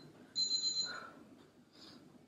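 A high electronic timer beep about a third of a second in, lasting just over half a second, marking the start of a 50-second work interval.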